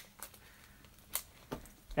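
Quiet handling of a wrapped pack of shipping labels in a cardboard box: three faint ticks and a light rustle of cardboard and plastic wrap.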